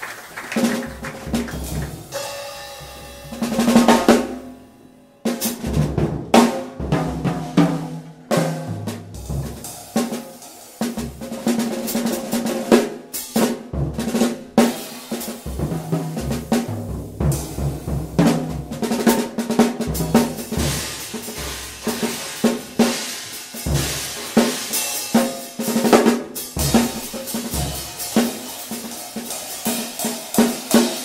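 Drum kit played freely in dense, irregular strokes, with snare, bass drum and cymbals. A loud flurry comes about four seconds in, then a brief lull before the busy playing resumes.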